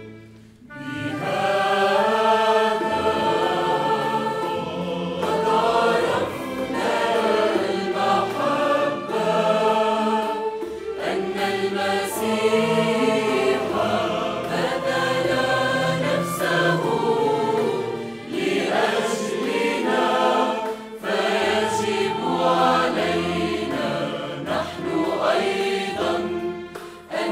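Mixed choir of men and women singing in harmony with a string ensemble accompanying. The choir comes in about a second in, after a short pause.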